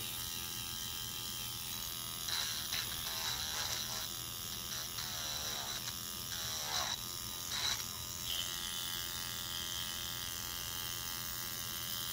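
Handheld electric nail drill with a sanding band bit running steadily, its whine wavering in pitch between about two and eight seconds in as it grinds the sharp edges off a cured resin earring.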